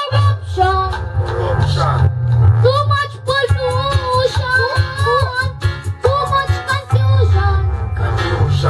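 A boy singing into a microphone over a bass-heavy backing track, with held, wavering notes in the middle of the phrase.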